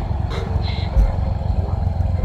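Deep subwoofer bass filling a pickup truck's cab, a continuous low rumble with a heavier low thump about a second in.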